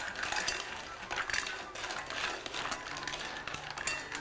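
Clam and mussel shells clattering and clinking against each other and against the coated pot as they are stirred with a wooden spatula: a quick, irregular run of small knocks.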